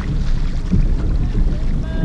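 Wind buffeting the microphone of a camera on a kayak's bow, a low rumble, mixed with small waves lapping against the plastic hull.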